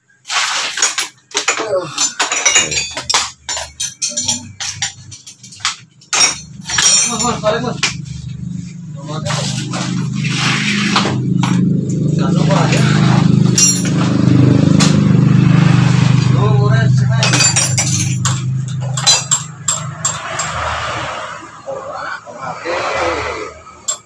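Metal tools and parts clinking and knocking while a scooter's front end and jack are worked on, many sharp strikes in the first third. Then a low steady drone builds, holds for several seconds and fades, with further knocks over it.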